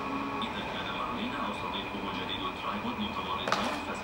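Steady hum of a potter's wheel's belt-driven machinery while a large clay jar is thrown. Faint voices sit in the background, and there is a single sharp knock about three and a half seconds in.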